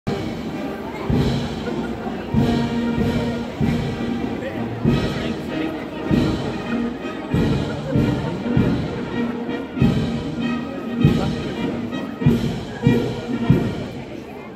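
Marching brass band playing a march, with held brass notes over heavy drum beats a little over a second apart.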